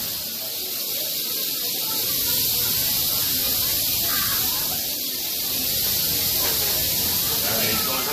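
Rattlesnakes rattling their tails, a steady high buzz that does not let up: the defensive warning of snakes disturbed by being handled.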